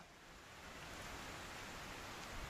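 Faint, steady hiss of background room tone and microphone noise in a pause between spoken sentences, rising a little over the first second.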